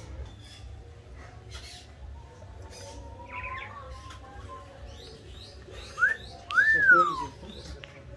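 Caged songbirds chirping with many short high calls, and two loud whistled notes that rise then fall, about six and seven seconds in.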